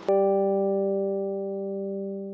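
A single low musical note struck once, ringing on steadily and fading slowly.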